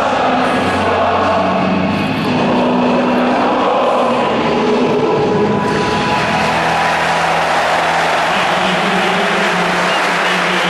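Large football stadium crowd chanting and singing together, a loud, steady mass of voices. The noise swells brighter about six seconds in.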